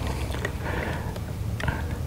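Steady hiss of compressed air flowing through a SATA Jet 100 B RP primer spray gun while its air pressure is being set, with a couple of faint clicks.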